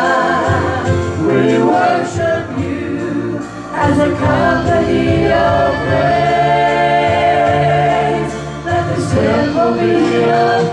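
Gospel worship song sung by male and female voices through a PA system, with piano accompaniment, the singers holding long notes.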